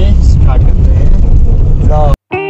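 Loud, steady rumble of a car on the move heard from inside the cabin, heavy in the low end, with brief snatches of a voice, one near the end.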